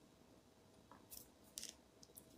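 Near silence: room tone, with a few faint clicks about halfway through.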